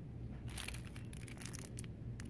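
Cellophane wrapping on a pack of paper napkins crinkling and crackling in short bursts as it is handled and lifted out of a shopping cart, over a faint steady low hum.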